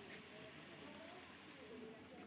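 Near silence: quiet hall room tone with faint distant murmuring voices.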